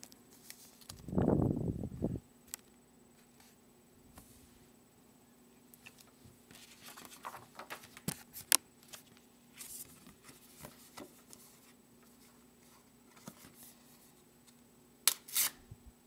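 Pokémon trading cards and their paper vending sheet being handled and peeled: scattered rustles and light clicks. There is a muffled low rumble about a second in and a brief burst of sharp rustling near the end.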